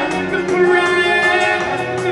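Live rock band playing in an arena, heard from the crowd: singing over electric guitar and drums.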